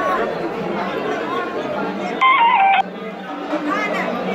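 Overlapping voices and chanting in a temple over a steady held drone, with devotional music. About two seconds in, a brief loud tone steps down in pitch and cuts off.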